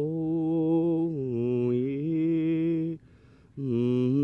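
A man singing unaccompanied, holding long drawn-out notes with a slight waver. The pitch steps down about a second in, and he breaks off briefly near the end before starting another long note.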